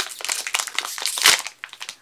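Foil toy-pack wrapper crinkling and tearing as it is pulled open by hand. The loudest rip comes a little past a second in.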